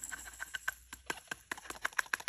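Diamond painting drills sliding off a plastic sorting tray into a small plastic storage pot: a rapid, irregular pattering of tiny clicks.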